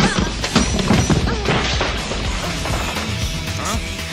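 Film fight sound effects over a dramatic score: a quick run of crashes and blows, thickest in the first two seconds and then thinning out.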